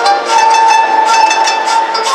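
Koto ensemble playing with a shakuhachi: plucked koto strings under one long, steady shakuhachi note held from about half a second in to near the end.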